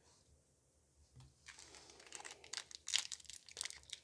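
Foil Pokémon booster pack wrapper crinkling in the hands and being torn open at the top, a dense run of crackles starting about a second and a half in.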